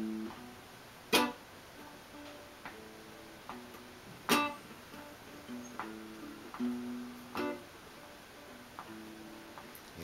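Solo acoustic guitar played quietly, picked notes ringing in a short instrumental break, with a few sharp, louder accents, the strongest about a second in and about four seconds in.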